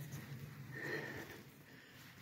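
Faint, steady buzzing of honeybees flying around their hives on the spring cleansing flight, with a soft rustle-like swell about a second in.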